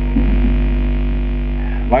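Steady electrical mains hum on the recording: a loud, low drone with a ladder of higher overtones. A man's voice starts speaking right at the end.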